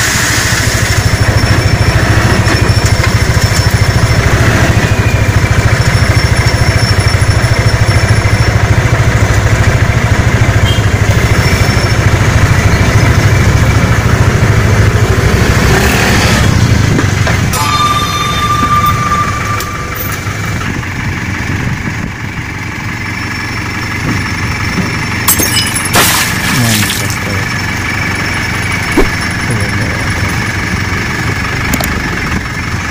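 Dump truck's engine running steadily while its tipper bed is raised to unload soil, loud at first and quieter from a little over halfway through.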